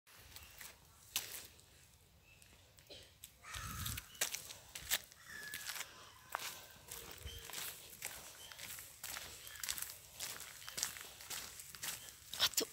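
Footsteps on a gritty tarmac path, a step about every two-thirds of a second, with a brief low rumble about three and a half seconds in.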